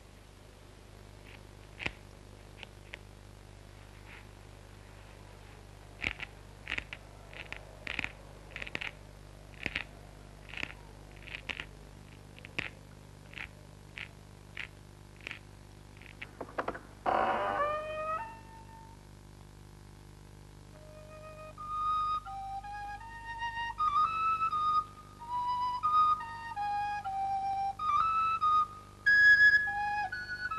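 A knife cutting a wooden stick in short, sharp strokes, a little more than one a second, as the stick is whittled. About halfway through comes a brief louder sliding sound, and then a flute plays a slow melody of single notes.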